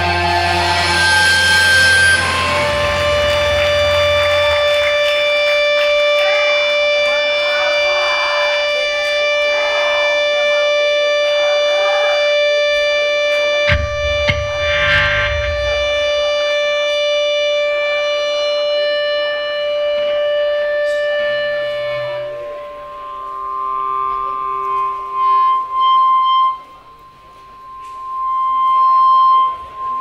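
Live band's heavy final chord with a deep low end, then electric guitars left ringing as long sustained drone tones for about twenty seconds, with a single low thud midway. Near the end the drone thins to a few held high tones that swell and fade in waves, ending in one loud swell.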